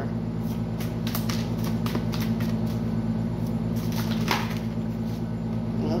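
A tarot deck being shuffled by hand: a run of light clicks and flicks of card edges, with one louder slap about four seconds in, over a steady low hum.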